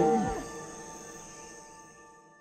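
The final chord of a children's song ringing out and fading away, with a short falling animal-like cartoon grunt in the first half second.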